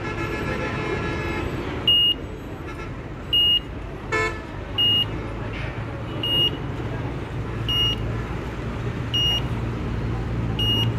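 Vehicle reversing alarm beeping a short, high tone about every one and a half seconds, over the noise of engines running. A brief horn toot sounds about four seconds in.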